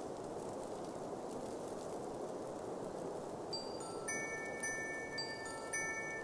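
Steady soft rushing wind ambience. About halfway through, tinkling chime-like bell notes enter one after another and ring on, the start of a gentle music passage.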